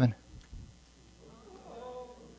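Faint, drawn-out murmur of voices from the congregation, rising from about a second in, right after the preacher's voice breaks off.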